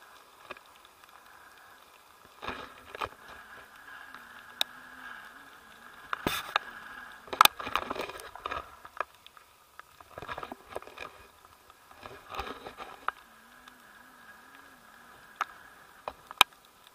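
Wind rushing past an action camera's housing during paraglider flight, with scattered knocks, taps and rubs as the handheld camera is moved about, busiest in the middle.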